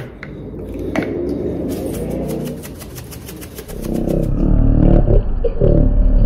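Pepper being shaken from a plastic spice bottle over a bowl: a quick run of rattling taps, about eight a second, for two seconds in the middle. From about four seconds in it gives way to a louder low rumble with sounds that rise and fall in pitch.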